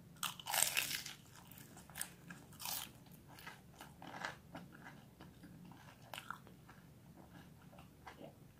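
A bite into a crunchy chicken samosa: the pastry cracks loudly in the first second, followed by several fainter crunches as it is chewed.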